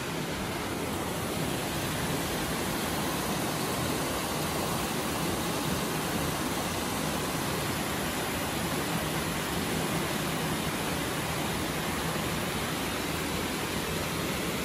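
Steady rush of a brook flowing through a narrow rocky marble gorge, an even, unbroken noise.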